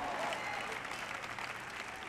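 Audience applauding softly: an even patter of many hands that eases off slightly towards the end.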